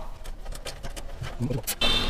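Nylon zip tie being pulled tight around a bundle of PC power cables, a run of small, quick ratcheting clicks, with a sharper click near the end.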